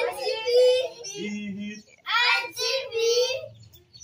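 Young children's voices singing and calling out in high voices, in several short bursts, with a quick rising whoop right at the start.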